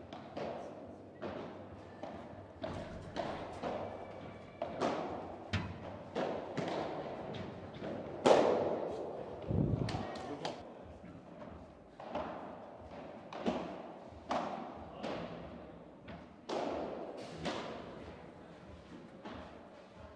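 Padel rally: a series of sharp ball impacts, the ball struck by rackets and rebounding off the court and glass walls at irregular intervals, each hit echoing in a large indoor hall.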